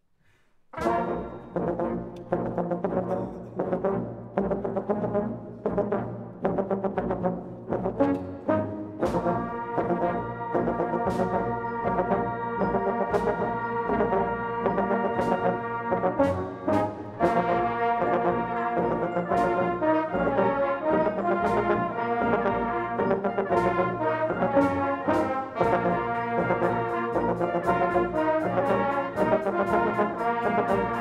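Brass band starting to play about a second in, with percussion: short accented chords punctuated by drum strikes, then full held brass chords over a steady drum beat from about nine seconds.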